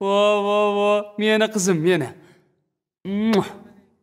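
Children's voices calling out drawn-out greetings: one long held call, then shorter calls that fall in pitch.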